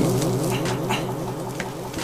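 A cat yowling: one long, low, drawn-out call that slowly fades.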